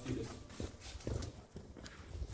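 Faint footsteps on a dirt path, a few steps roughly half a second apart, over a low rumble.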